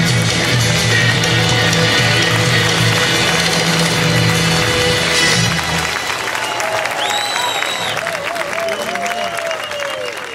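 Live rock band with electric guitar, bass and drums playing the last bars of a song, stopping about halfway through. The audience then applauds and cheers, with a high whistle a second or so later.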